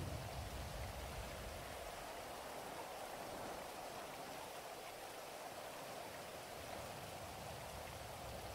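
Faint, steady rain ambience with an even hiss. A low rumble underneath fades away over the first couple of seconds.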